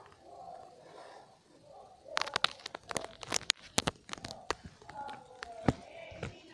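Handheld phone being handled, with fingers rubbing and knocking on the microphone: a flurry of clicks and knocks in the middle and another near the end, over faint murmured voices.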